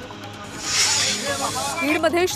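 Whoosh sound effect for a TV news graphic transition: a loud rush of hiss that swells about half a second in and fades away over about a second, over a faint music bed.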